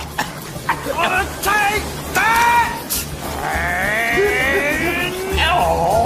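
Cartoon character voices: short wordless cries and a long wavering wail, over background music, with a few sharp clicks.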